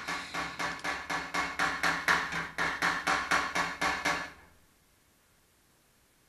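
Steel hammer tapping the steel sheet metal around a Triumph TR250's front headlight opening in quick, even, light taps, about five a second, coaxing a dent back to shape. The tapping stops about four seconds in.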